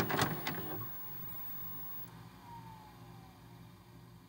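VHS-style static sound effect: crackling clicks and hiss that fade out within the first second, leaving a faint low hum with a faint falling tone near the middle.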